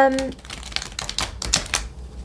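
Deck of tarot cards being shuffled by hand: a quick, irregular run of sharp card clicks lasting about a second and a half.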